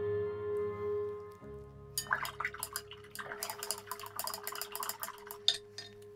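Soft ambient music with held tones drops away about a second and a half in. Then a paintbrush is swished and tapped in a water pot: a run of small, irregular clicks and watery ticks for about three seconds.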